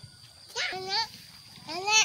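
A young child's voice giving two short, high-pitched wordless exclamations, the second one rising in pitch near the end.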